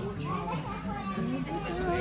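Overlapping chatter of several people talking at once, children's voices among them, with no single voice standing out.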